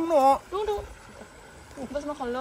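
A person's voice in short, pitch-sliding exclamations at the start, then a quiet gap of about a second, then voice again just before the end.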